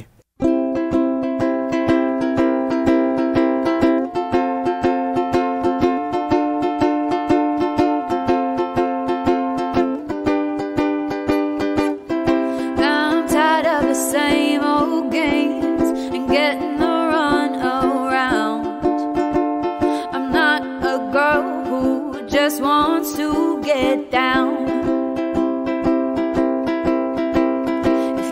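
Ukulele strummed steadily through a song, with a woman singing from about twelve seconds in.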